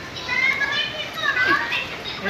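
High-pitched voices talking and calling out, like children's chatter.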